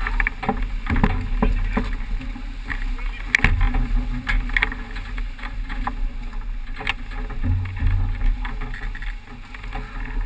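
Strong wind buffeting the microphone and water rushing and splashing along the hull of a racing keelboat sailing fast through choppy sea, with scattered sharp clicks and splashes.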